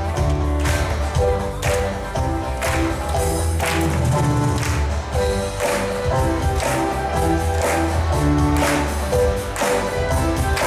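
Live worship band playing an upbeat song with a strong bass line. The congregation claps along in time, about once a second.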